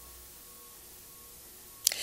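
Quiet room tone picked up by a lectern microphone: a faint even hiss with a faint steady hum, then one sharp click near the end.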